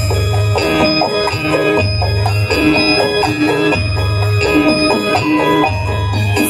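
Loud amplified live music accompanying a burok dance: a melody of sustained pitched notes over low bass notes that come about every two seconds.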